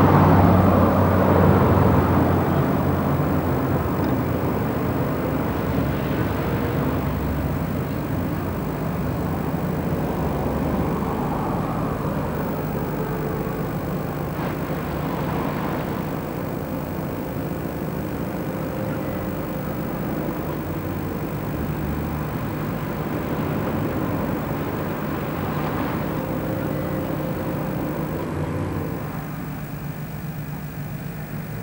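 City street traffic: motor vehicles running and passing, loudest in the first couple of seconds as a bus goes by close, then a steady traffic rumble.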